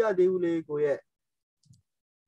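Speech: a voice talks for about the first second, then the sound cuts to silence.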